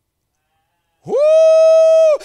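A man's loud, high 'Woo!' shouted into a handheld microphone. It starts about a second in, sweeps quickly up and then holds one steady high note.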